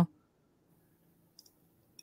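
Near silence, with one faint click about one and a half seconds in.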